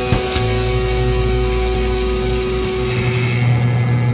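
The closing held chord of a psychobilly rock song, electric guitar and bass ringing out over steady sustained notes, with a single drum hit just after the start.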